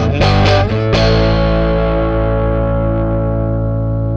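Distorted electric guitar chords: a few quick stabs in the first second, then a last chord left ringing and slowly fading.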